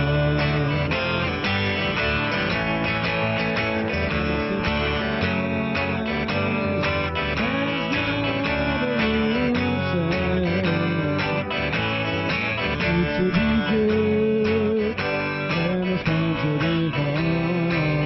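A pop band playing live: two electric guitars and an electric bass, with tambourine keeping time.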